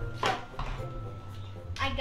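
Short bursts of children's voices, about a quarter second in and again near the end, over a low steady hum.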